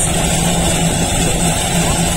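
Steady engine noise: a constant low hum with a thin high whine, over a rumbling low haze like wind on the microphone.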